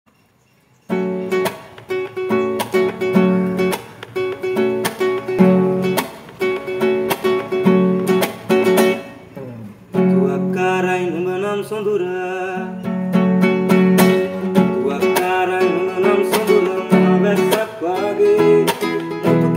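Nylon-string classical guitar played by hand, plucked chords and notes starting about a second in. A man's singing voice comes in over the guitar about ten seconds in.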